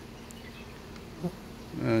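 Honeybees buzzing as a steady low hum over the open frames of a hive full of bees.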